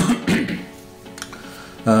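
A man clearing his throat, a short harsh rasp in the first half-second, over soft background music with sustained notes.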